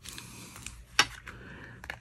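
Folded card stock being handled: paper rustling and sliding under the hands, with one sharp tap about a second in and a couple of lighter clicks near the end.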